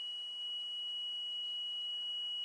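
Small electric piezo buzzer sounding one steady high-pitched tone, powered by a homemade five-cell lemon-juice battery: it sounds on five cells but not on four.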